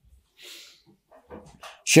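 A pause in a man's speech: a faint in-breath about half a second in, a few small mouth clicks, then he starts speaking again just before the end.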